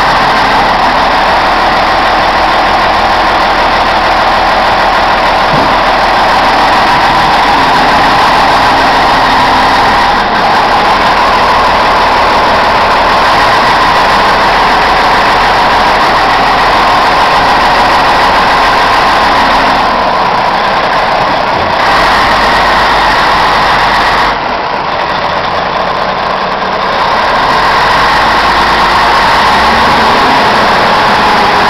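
Caterpillar 980C wheel loader's six-cylinder 3406 diesel engine running steadily, heard close up. The level dips a little for a few seconds late on.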